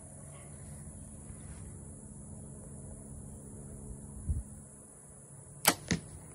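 A Mathews Phase 4 compound bow set at 70 pounds shooting an arrow, with a sharp snap of the string released near the end, followed a split second later by a second sharp crack as the arrow strikes the target. A dull bump comes a little earlier.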